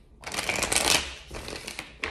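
A deck of tarot cards being shuffled by hand: a dense papery riffle, loudest in the first second, then softer rustling of the cards.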